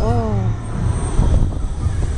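Heavy wind rumble on the microphone as the KMG X-Drive fairground ride swings the rider through the air. Near the start a rider's voice gives a short shout that falls in pitch.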